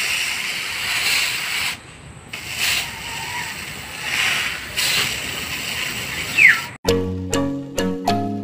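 A steady rushing hiss, dropping out briefly about two seconds in. Near the end it cuts off abruptly and background music of evenly spaced plucked notes begins.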